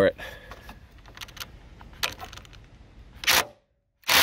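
Cordless DeWalt brushless impact driver with a T40 Torx bit on a long extension, hammering in short bursts against seized door hinge bolts that will not turn. There is a brief burst about two seconds in and a louder one near the end, after which the sound cuts off abruptly.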